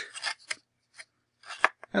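A few short, light clicks and scrapes from varnished paper bracelet pieces being handled and set into a folded paper tray, spaced out with quiet gaps between them.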